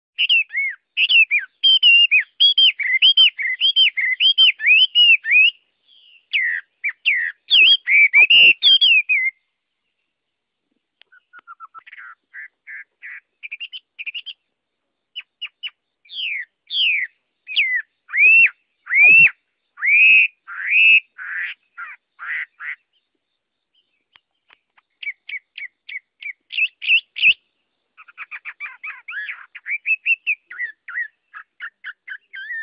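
A caged laughingthrush singing: loud, varied whistled phrases in quick runs, broken by short pauses about ten and twenty-four seconds in. Two soft thumps fall under the song.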